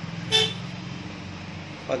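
Low steady electrical hum from a powered V-Guard voltage stabilizer, with one brief high toot about a third of a second in.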